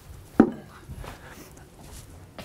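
A single sharp knock about half a second in, as a hard part is handled or set down, followed by faint light taps and rustling.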